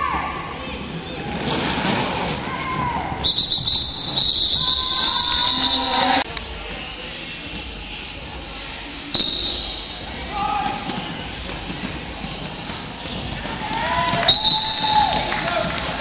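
Referee's whistle at a roller derby bout: one long blast a few seconds in, a short blast just past the middle as the skaters stand lined up in the pack, the jam-start whistle, and another short blast near the end. Voices call out around the whistles.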